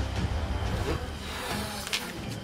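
A rubber balloon being blown up by mouth: a steady rush of breath blown into it as it fills.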